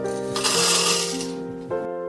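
Coffee beans poured into the clear plastic hopper of an espresso machine's built-in grinder, a rattle lasting about a second, over soft piano background music.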